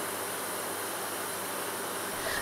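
Steady, even hiss with a faint low hum: room tone of a chemistry laboratory with its instruments running.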